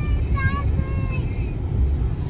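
Steady low road and engine rumble inside a moving car's cabin, with faint sung notes over it.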